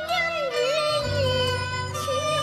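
Live Cantonese opera (yuequ) music: a single wavering melody line with vibrato that slides down about half a second in, over sustained low accompanying notes.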